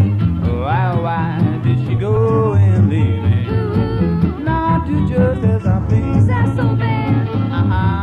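An acoustic swing band playing live: a gliding lead melody over guitar and a steady bass line.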